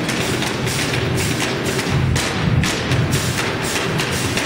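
Percussion played on a refrigerator: its shell, doors and shelves struck by hand and with sticks in a fast, busy rhythm, with deep thuds under sharper knocks.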